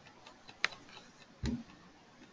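Faint clicks of a computer mouse: a small click, a sharper one about two-thirds of a second in, and a soft low knock about a second later, with quiet room noise between.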